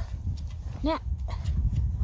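Wind buffeting the microphone: a low, uneven rumble. A short spoken syllable comes about a second in.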